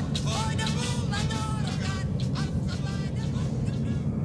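Steady low rumble of a passenger train running, heard from inside the coach, with a person's voice over it.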